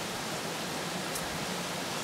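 Steady, even background hiss with no voice, and one faint short tick about a second in.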